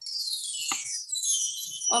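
Chimes struck with a single sweep: a run of high ringing tones that falls in pitch and then rings on. A voice comes in near the end.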